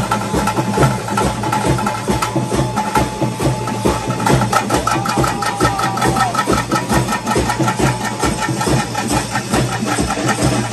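Traditional kola ritual music: fast, continuous drumming, with a wind instrument holding long notes over it.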